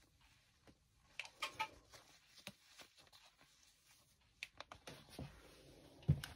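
Near silence: room tone with a few faint, scattered clicks and rustles.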